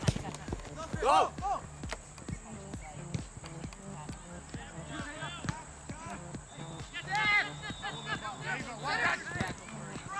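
Soccer match play: distant shouts from players and spectators come in short bursts, with scattered sharp knocks of the ball being kicked on grass.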